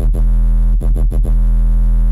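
Serum sine-wave sub bass, fat and distorted through Diode 2 distortion, holding one deep note that is briefly retriggered several times. A thin high-pitched whine from the Redux downsampler sits on top of it.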